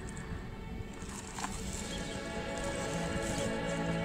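Background music with held notes, swelling slightly.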